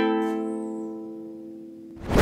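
A strummed ukulele chord rings out and fades away steadily, with no new strokes.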